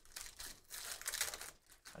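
Foil trading-card pack wrapper crinkling and tearing as a pack is opened by hand, in two short bursts of rustling.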